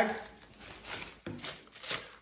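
Thin Dyneema stuff sack crinkling and rustling as it is worked down over a GoPro camera. The crisp rustle comes in a few short spells and is loudest near the end.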